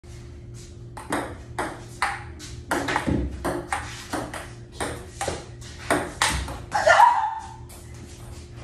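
Table tennis rally: a plastic ping-pong ball clicking back and forth off paddles and the tabletop in a quick, uneven run of sharp hits, several a second.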